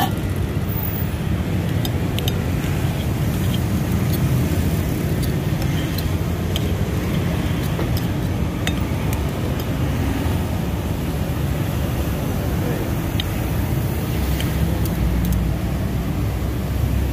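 Steady rumble of passing road traffic, with scattered light clicks and chinks of a metal knife and fork cutting siomay against a ceramic plate.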